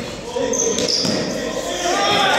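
A group of people shouting and calling out while running about in a reverberant sports hall, with footfalls on the hard floor; the voices grow louder near the end.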